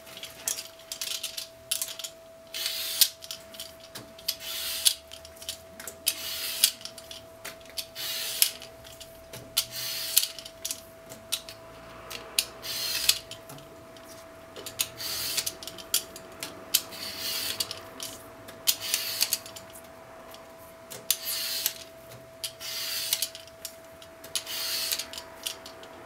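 A peeler scraping the skin off a daikon radish in repeated strokes, about one every one to two seconds.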